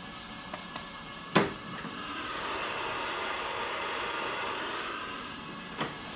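A few light clicks and one sharper click about a second and a half in, as a sponge is handled with tweezers on a small scale, then a steady airy rushing noise that swells for about three seconds and fades away.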